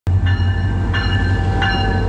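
MotivePower MP36PH-3C diesel passenger locomotive passing close by with a steady deep engine rumble, its bell ringing about one and a half strikes a second.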